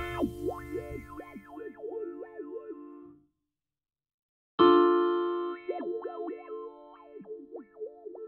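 An electric-piano chord from Reason's ID8 played through the formant filter of Reason's Thor synth. The filter is being swept on its XY pad, so vowel-like peaks glide up and down through the sustained chord. The first chord dies away about three seconds in, and a second chord starts about a second and a half later with the same sweeping.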